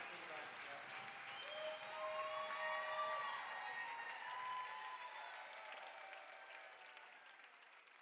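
Audience applause with a few drawn-out cheers, loudest a couple of seconds in and then fading away.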